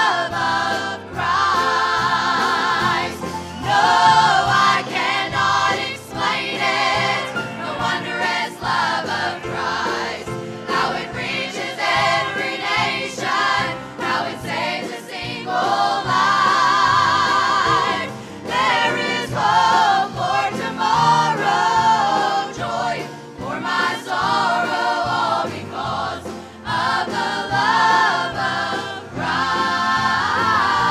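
Women's chorus singing a gospel song together, the voices held and sustained with vibrato.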